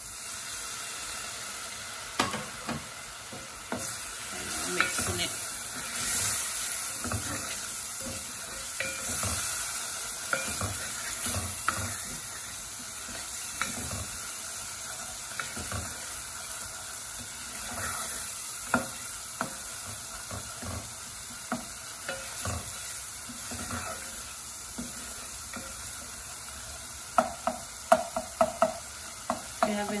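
Onion and spice paste sizzling in a stainless steel pot while a plastic spoon stirs and scrapes through it. Scattered clicks of the spoon against the pot become more frequent near the end.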